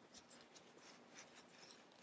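Near silence, with faint rubbing and a few small ticks of fingers moving the plastic action figure's arm joints.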